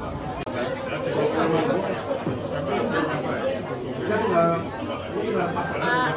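Chatter: several people talking at once around the tables of a crowded eatery, with no single voice standing out.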